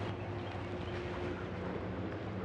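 Steady low mechanical hum under an even background hiss, with a faint higher tone that fades out after about a second and a half.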